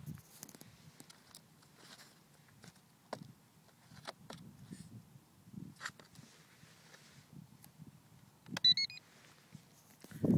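The electronic speed controller in a ParkZone Mustang RC plane gives a short run of high beeps near the end, the signal that the flight battery has just been plugged in and the controller is powered up. Faint clicks and rustles of handling come before it.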